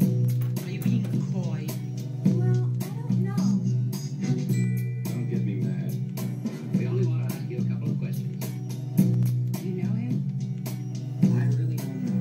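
Music with a steady bass and regular beats, with voices over it, from a smartphone video played through a stereo receiver and loudspeakers.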